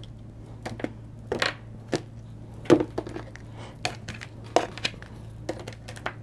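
A thick deck of oracle cards being cut and handled by hand: a string of short, irregular snaps and rustles as cards are split, slid and tapped against each other and the table.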